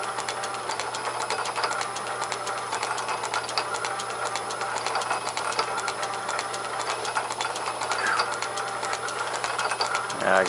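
South Bend metal lathe running steadily, its headstock spindle turning a tapered lap that is lapping the Morse taper #3 (MT3) headstock bore, with a steady hum and rapid even mechanical ticking throughout.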